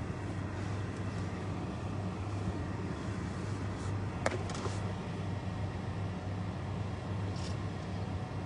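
A steady low mechanical hum over constant background noise, with one sharp click about four seconds in.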